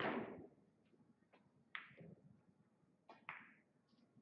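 Pool balls clacking. A sharp hard ball-on-ball strike with a short ring right at the start is the loudest sound, as the object ball is driven into the side pocket. Two more sharp ball clicks follow, about two seconds and three and a half seconds in.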